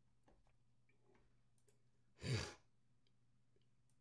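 A man's single short sigh, a breath out into a close microphone, a little past the middle; a few faint clicks come before and after it over near silence.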